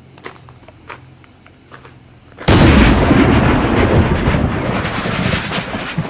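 Faint clicks, then about two and a half seconds in a sudden, very loud burst of deep, rushing noise like a blast, which carries on and begins to fade near the end.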